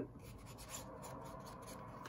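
Faint rustling and rubbing of a small kraft-paper pocket being handled and turned in the hand.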